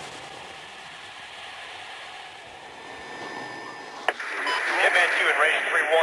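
A steady hum of background noise, then a click about four seconds in and a voice starting over a two-way radio, thin and narrow-sounding.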